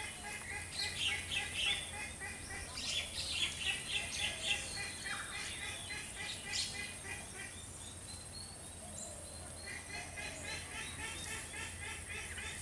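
Outdoor birds chirping and calling in quick repeated notes, over a steady thin high-pitched whine.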